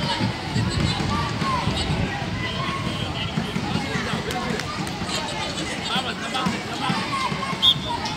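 Scattered distant shouts and calls of youth football players over a steady outdoor background noise, with a few dull thuds.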